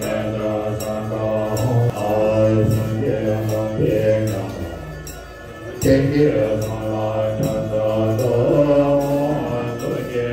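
Buddhist monks chanting a mantra together in a low drone of held notes, a new phrase starting about six seconds in.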